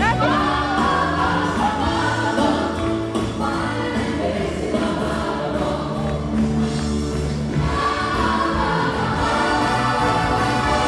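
A live stage band and a chorus of voices singing held notes over a steady bass line, heard from among the audience in a large concert hall.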